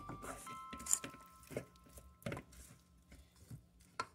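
Wooden spoon mixing raw seasoned chicken pieces in an aluminium bowl: a few soft, scattered knocks and wet shuffles of the meat against the bowl.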